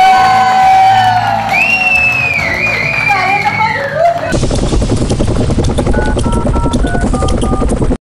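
A woman sings a long held note into a microphone over a live electric guitar, then a higher voice glides above it while the audience cheers and claps. About four seconds in, the sound cuts abruptly to a different recording: a fast, beat-driven jingle with short electronic notes.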